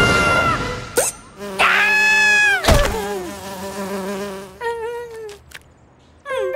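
Cartoon sound effects: a giant bee's wings buzzing, cut by a sharp hit about two and a half seconds in, then a short wobbly warbling sound before it goes quiet near the end.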